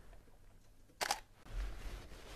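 A digital SLR camera's shutter fires once at 1/30 s, giving a short double click about a second in.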